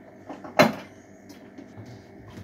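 A single sharp knock about half a second in, with a few faint clicks of handling around it, like something being bumped or set down at the water heater.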